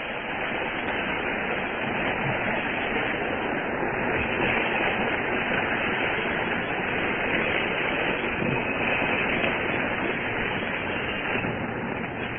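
A steady rushing noise with no words in it. It swells over the first couple of seconds, holds, and eases off near the end, filling a break in the sermon recording.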